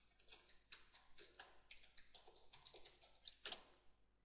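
Faint typing on a computer keyboard: irregular keystrokes at about four a second as a login name and password are entered, with a slightly louder keystroke near the end.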